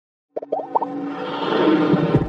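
Animated intro sound effect. About a third of a second in, a quick run of four or five short pops starts, and it gives way to an electronic music swell that grows louder.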